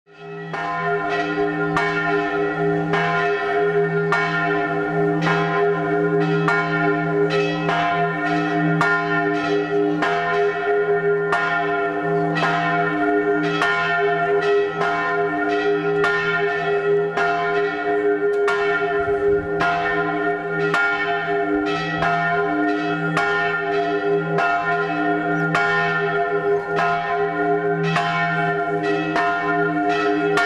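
Church bells ringing in a continuous festive peal, struck rapidly at about two to three strokes a second, with the ringing tones of several bells overlapping; the sound fades in at the very start.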